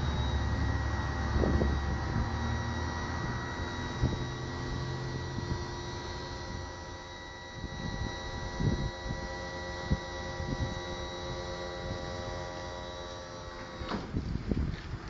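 Hydraulic lift of a Razorback pickup bed running with a steady hum as the cargo floor lowers. The low hum is heavier for the first five seconds or so, and a few light knocks come through.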